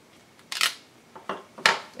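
A clear acrylic stamp block is lifted off a paper card and set down on the table: a few short clicks and paper rustles, the sharpest near the end.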